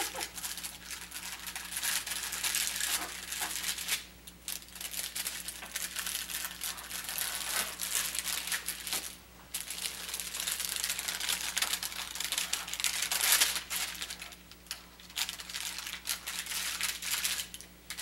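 Paper wrapper of a sterile glove pack crinkling as it is opened and unfolded by hand, on and off, with brief pauses about four and nine seconds in.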